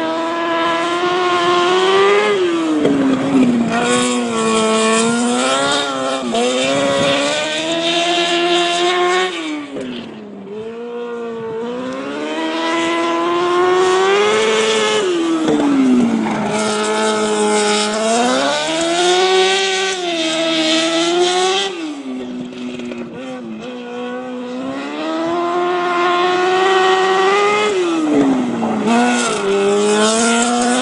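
Micro sprint car's engine lapping, loud throughout. Its pitch climbs as it accelerates, then drops sharply as the driver lifts for the turns, repeating about every six seconds.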